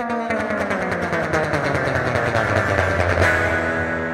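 Guitar-led music with sustained chords.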